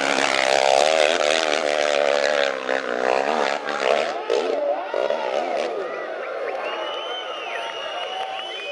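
Off-road motorcycle engine revving hard on a steep climb, its pitch wavering up and down for about the first half, then easing off.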